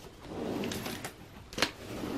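Paper sewing-pattern envelopes rustling as fingers flip through them in a plastic storage tray, followed by one sharp click about one and a half seconds in as the tray is handled.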